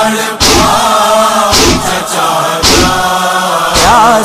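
Voices chanting a Muharram nauha refrain, cut by four sharp, evenly spaced matam strikes, about one a second, marking the beat of the lament.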